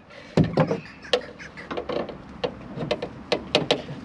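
Metal corner-steady winder handle clicking and clinking against the steady's spindle as it is fitted on and turned: a scatter of sharp knocks, several close together near the end.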